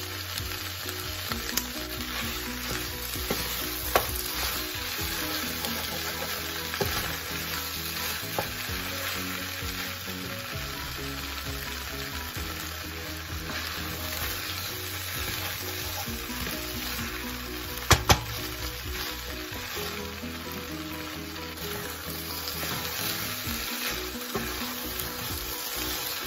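Shrimp fried rice sizzling in a hot oiled pan while it is stirred and turned with a wooden spoon, with scattered light clicks from the stirring. Two sharp knocks come about eighteen seconds in.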